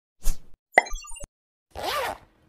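Animated logo-intro sound effects: a short pop, then a sharp hit followed by a scatter of brief bright chime-like notes, and a rushing swell with a bending tone near the end.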